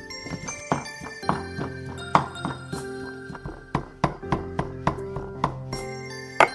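Cleaver chopping pork on a thick round wooden chopping block: a run of sharp, uneven chops, two or three a second, mincing the meat. Background music plays throughout.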